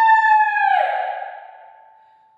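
Unaccompanied contralto voice holding a high, steady note that slides downward into a breathy fade a little under a second in, leaving a faint thin tone behind.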